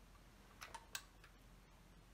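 Near silence with three faint clicks a little over half a second in, as the clarinet's keys and body are handled.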